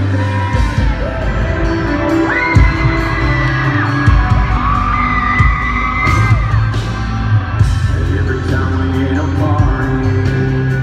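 Live band playing, with electric guitars, bass and drums under a lead singer who holds two long notes, one about two seconds in and one around the middle.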